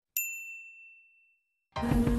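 A single bright 'ding' sound effect for a tap on a notification bell icon, ringing out and fading away over about a second and a half. Music with a beat starts just before the end.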